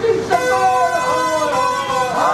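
A group of protesters shouting slogans together, their voices sustained and loud, with a steady held tone running under them from a moment in.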